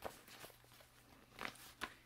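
Faint handling noise: soft rustles and a few light clicks as a plastic pencil pouch is picked up and handled.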